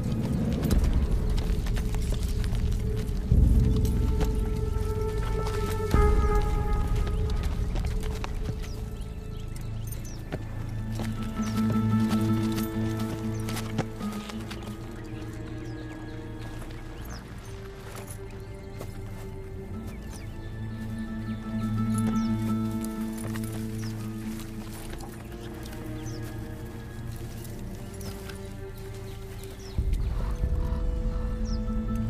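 Film score music with long held notes, with horse hooves clip-clopping under it. Two low thuds come a few seconds in.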